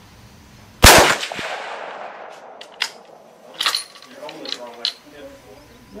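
A single rifle shot from a Weatherby bolt-action rifle in .243 Winchester about a second in, with an echo that dies away over a second or so. A few sharp clicks follow.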